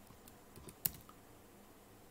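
A few keystrokes on a computer keyboard in the first second, ending with a single louder key press a little under a second in.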